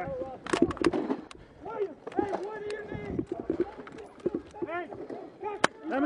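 Men shouting, words unclear, with scattered gunshots: a cluster of sharp cracks about half a second to a second and a half in, and another single crack near the end.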